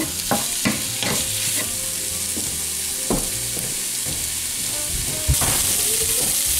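Ground sausage frying in a nonstick skillet with a steady sizzle, while a wooden spatula presses and scrapes through the meat, a few strokes in the first second and a half and another about three seconds in. A knock just after five seconds, after which the sizzle is louder.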